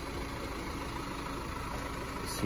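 Steady, even background hum with an engine-like low rumble.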